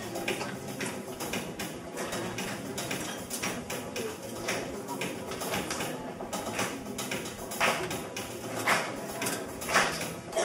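Indistinct chatter from an audience, too faint for words, with scattered small knocks and rustles, a few sharper ones near the end.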